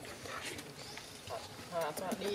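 A young macaque gives short, high, wavering squeaks in the second half, with faint clicks of movement on the leafy ground.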